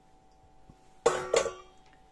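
A stainless steel mixing bowl is moved and set down on a table, giving two quick clanks about a second in, each with a short metallic ring.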